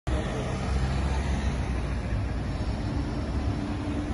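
Road traffic noise: a steady low rumble of passing vehicles, with a faint steady hum joining in the second half.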